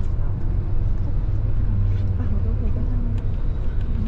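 Steady low rumble of a bus's engine and road noise heard from inside the cabin while it drives, with faint voices in the background.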